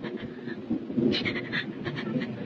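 Ragged, panting breaths from a person gasping in distress, coming in irregular bursts.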